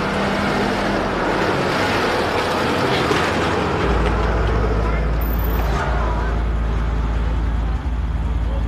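Motor vehicle running amid street noise, with a deep steady rumble that comes in about four seconds in.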